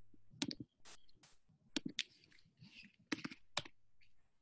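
Scattered sharp clicks at a computer, about eight of them at uneven intervals, some in quick pairs, fairly faint.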